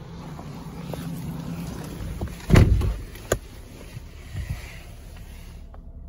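A car door shutting with a heavy thud about two and a half seconds in, followed by a sharp click, over a steady low hum.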